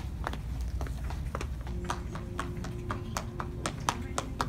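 Quick footsteps on a hard store floor, sharp taps about three a second from a running toddler and the person following her, over a low rumble. A faint steady tone sits under them in the second half.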